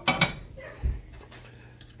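Kitchen utensils clattering against a metal baking sheet: a short clatter at the start, a low thump a little under a second in, then a few light clicks.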